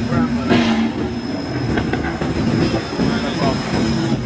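Steady rumble of street traffic, with car engines running as cars drive past, and people's voices mixed in.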